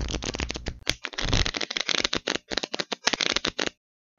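A deck of playing cards being shuffled: a rapid patter of card clicks in a few quick runs, stopping shortly before the end.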